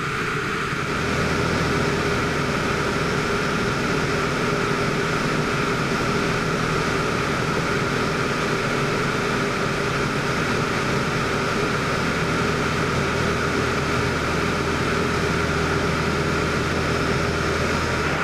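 Van's RV-6 light aircraft's piston engine and propeller droning steadily in flight, a little louder from about a second in.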